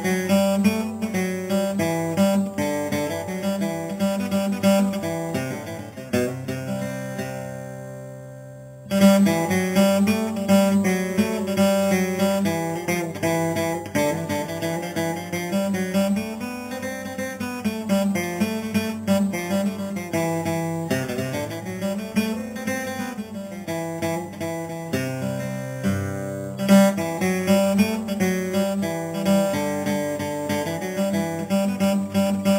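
Solo acoustic guitar playing an instrumental passage, picked melody notes over a bass line. The playing dies away between about six and nine seconds in, then starts again with a loud chord. Another strong chord comes near the end.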